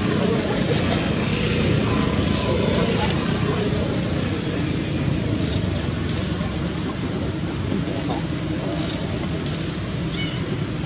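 Steady outdoor background noise of road traffic with indistinct voices, and two short high chirps.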